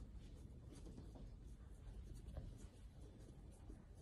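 Faint scratching and small ticks of a precision screwdriver turning the calibration screw on a fuel level converter's circuit board, adjusting the full-tank setting.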